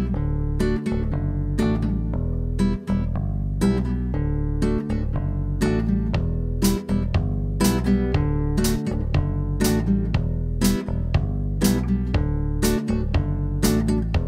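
Admira Artista nylon-string classical guitar playing an instrumental introduction: strummed chords over ringing bass notes at a steady pace, the chord changing about every two seconds.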